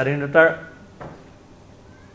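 A man's voice speaking for about half a second, then a pause with faint room noise.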